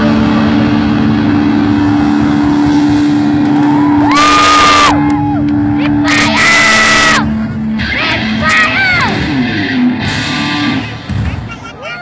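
A live rock band with electric guitars holds a sustained chord while loud whooping shouts rise and fall over it, several times. The music dies away near the end, as the song finishes.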